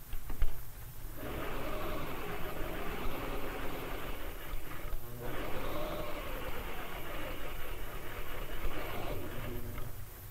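Domestic sewing machine running at a steady stitching speed while stay-stitching a bodice neckline. It runs in two stretches with a brief stop about halfway, and a couple of sharp clicks come just before it starts.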